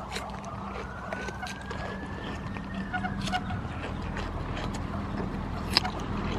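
A goat kid biting into and chewing a whole cucumber: scattered crisp crunches, the loudest near the end. Under them run a steady low hum and a faint tone that slowly rises and then falls.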